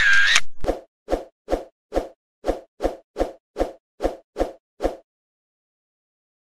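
Editing sound effects: a short camera-flash burst, then eleven soft thuds about 0.4 s apart, like photo prints dropped one after another onto a table, stopping about a second before the end.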